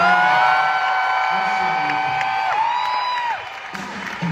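A man singing live through a microphone, sliding up into a long held note and then a second, shorter one, over crowd cheering; the singing stops shortly before the end.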